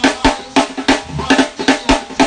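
Drum kit played in a quick, steady beat of snare hits about four to five a second, with bass drum kicks among them.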